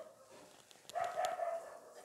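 A faint animal call lasting about a second, starting about a second in.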